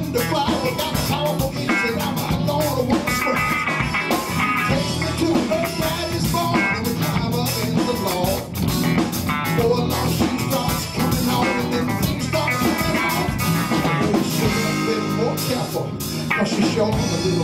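A live band playing an up-tempo country-blues jam with electric guitar and drum kit, steady and full throughout.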